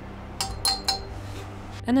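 Three light glass clinks about a quarter second apart, the second one briefly ringing: metal tweezers tapping against the rim of a small glass beaker while a piece of cesium is dropped into chloroform.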